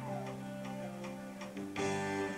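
Live rock band: electric guitar and bass hold notes, with a note sliding down at the start, over a cymbal ticking about three times a second. Near the end a loud guitar chord is struck.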